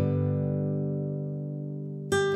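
Background acoustic guitar music: a single strummed chord rings on and slowly fades.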